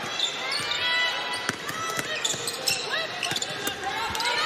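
A basketball being dribbled on a hardwood court, with sharp short squeaks of players' sneakers scattered throughout.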